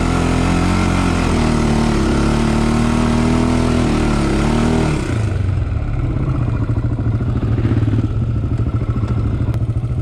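Honda 400X sport quad's single-cylinder four-stroke engine running at steady revs. About halfway through it drops to a low, pulsing note, engine braking in first gear as the quad creeps down a hill.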